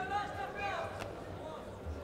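Indistinct voices and shouts echoing in a sports arena, over a low background hum, with a brief click about a second in.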